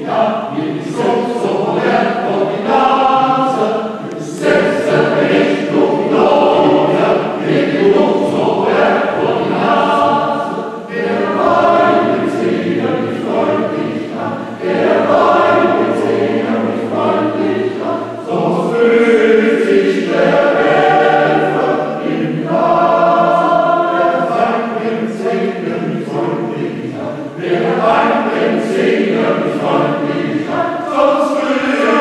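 Mixed choir of men's and women's voices singing in several parts, in long phrases with short dips between them.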